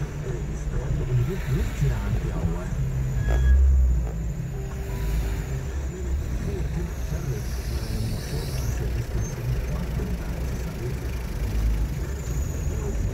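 A car creeping along in slow city traffic, heard from inside: a steady low engine and road rumble, with a louder low thump about three and a half seconds in.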